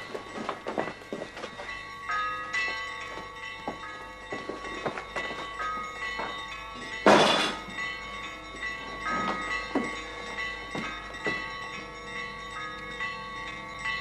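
Orthodox church bells ringing: several bells of different pitches struck one after another, their tones ringing on and overlapping. A loud thump about seven seconds in, and a few knocks in the first two seconds.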